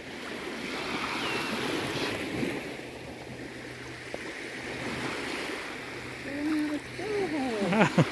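Small waves washing on the shore in a steady, even hiss, a little fuller in the first few seconds. A voice starts up near the end.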